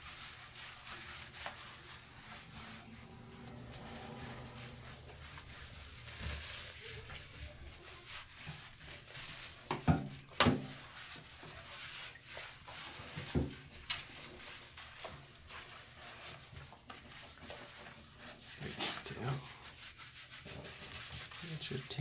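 Hands scrubbing shampoo lather into a wet dog's short coat: a steady rubbing, with a few sharp knocks about ten seconds in and again around thirteen to fourteen seconds.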